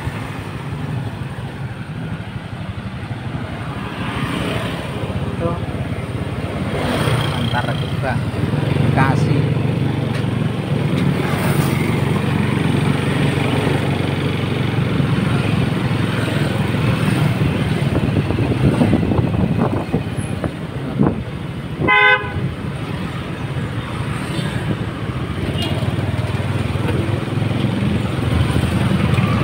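Steady engine and road rumble of a vehicle driving through light traffic, with a short single horn toot about three quarters of the way through.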